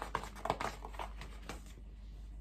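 Pages of a picture book being turned by hand: a quick run of paper clicks and crackles that dies away near the end.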